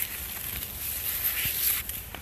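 Corn leaves rustling and brushing against the camera and body while pushing through the rows of a tall cornfield. The rustling stops shortly before the end, as the movement halts.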